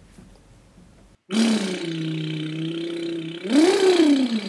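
Faint room tone for about a second, then street traffic: a vehicle engine running with a steady hum. Near the end its pitch rises and falls as it revs.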